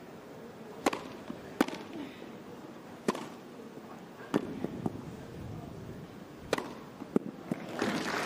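Tennis ball struck back and forth by rackets in a rally on a grass court: a series of sharp pops, roughly one every second or two, some followed closely by a softer second knock.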